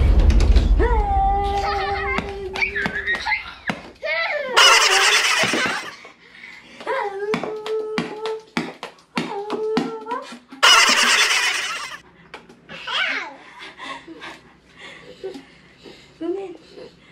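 A toddler's voice, held sounds and laughter, with two loud noisy bursts of about a second and a half and scattered short clicks.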